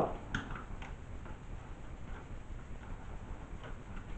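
Faint, irregular clicks and taps as fingers work at the metal frame of a disassembled LCD monitor panel.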